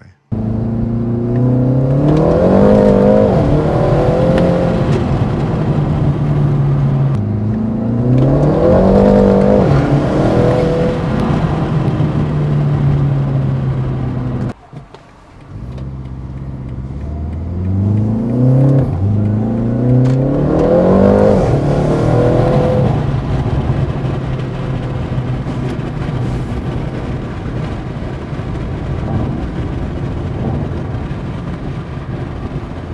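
Turbocharged 2.0-litre four-cylinder engine of a tuned BMW G20 330i, heard from inside the cabin, accelerating in several pulls. The engine note climbs and then drops back at each upshift of the automatic gearbox, with a short break about halfway through.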